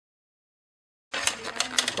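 Total silence for about a second, then handling noise starts abruptly: a few sharp clicks and rustles as the foam RC autogyro model is held and turned in the hand.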